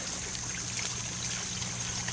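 Steady trickle of running water in a garden goldfish pond, with a faint low hum under it.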